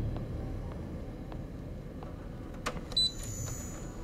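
Low room hum, then a click and a short electronic beep with a high, ringing tone near the end. It is a futuristic interface sound as a frosted smart-glass wall switches to clear.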